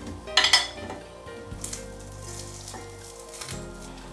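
Metal spoon scraping and clinking against a glazed terracotta baking dish as it scoops out a whole oven-roasted garlic head, loudest about half a second in, followed by a few faint knocks.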